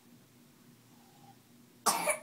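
Quiet room, then one short, sudden cough near the end.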